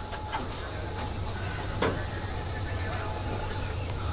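Steady low background rumble with faint voices in the distance and a single sharp click a little under two seconds in.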